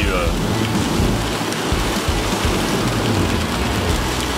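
Steady, loud hiss of rain on a moving car and its tyres on the wet road, heard from inside the cabin.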